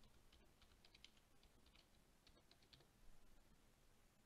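Faint typing on a computer keyboard as a file name is keyed in: a short run of keystrokes about half a second in, and another from a little past two seconds.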